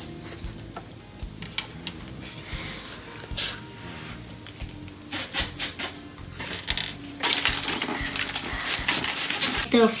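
Small clicks and rustles of hands handling wires and batteries on a tabletop, then, about seven seconds in, nearly three seconds of aluminium foil being crinkled.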